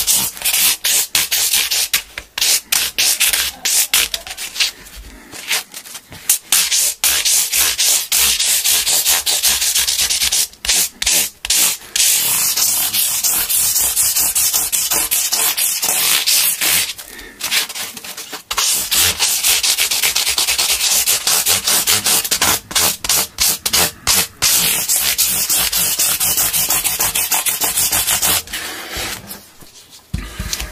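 Sanding sponge rubbed rapidly back and forth along the edge of a guitar fretboard, smoothing the newly installed fret ends. Quick scratchy strokes with a few short pauses, stopping shortly before the end.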